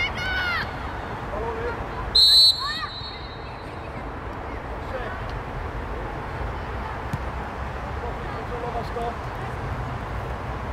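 A referee's whistle, one short blast about two seconds in, over distant shouts from the pitch and a steady outdoor background noise.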